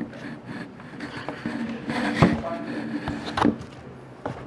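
Cardboard box and packaging being handled: rubbing with a few sharp knocks, the loudest about two seconds in.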